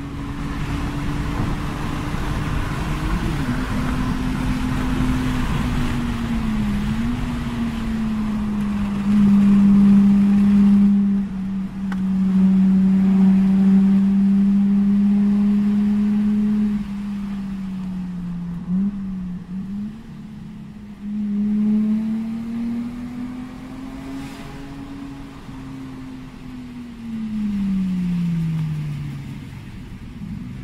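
Lexus IS200's 1G-FE 2.0-litre straight-six heard from inside the cabin while driving. The engine note rises and falls in pitch with road speed and is louder under acceleration from about nine to sixteen seconds in. Near the end the pitch drops steadily as the car slows.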